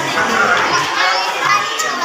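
Many children's voices chattering and calling over one another, a steady crowd babble.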